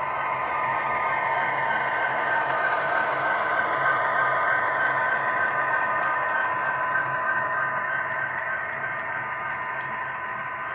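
Model diesel locomotive pulling covered hopper cars along layout track: a steady whining hum with the clatter of wheels on the rails, swelling slightly as the train passes about midway.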